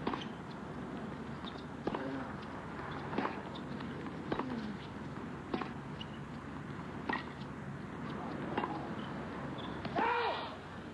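Tennis ball struck back and forth in a baseline rally: sharp hits about every one and a half seconds, seven in all, over a steady background hiss.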